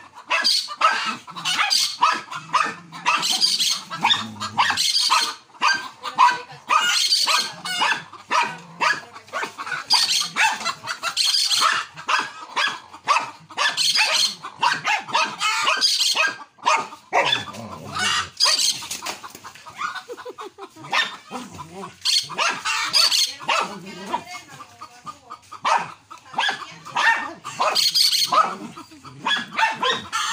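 Small dogs barking in a rapid, near-continuous volley, several barks a second, as they attack and kill an opossum.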